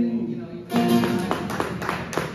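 Live acoustic song: a held sung note ends about half a second in, then acoustic guitar strumming comes in with a run of sharp percussive strokes from a cajón.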